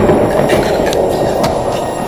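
Loud dramatic sound effect for a supernatural energy blast: a dense, noisy roar that slowly fades away, with a few thin high ringing tones and scattered sharp crackles over it.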